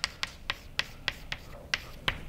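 Chalk tapping on a blackboard as a formula is written, about ten short, sharp clicks in an uneven run.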